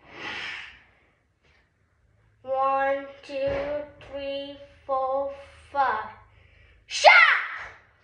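A boy's voice during a taekwondo breathing-punch drill: a sharp breath out, then about five drawn-out calls held at a steady pitch. Near the end comes a loud shout falling in pitch, the kind of shout that goes with a punch.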